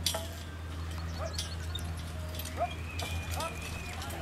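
Hooves of a team of ponies clip-clopping and a marathon carriage rattling as it drives through the obstacle, with a few sharp knocks, over a steady low hum.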